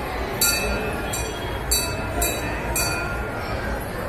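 A brass temple bell struck repeatedly, about six bright ringing strikes at an uneven pace, over a steady murmur of a crowd.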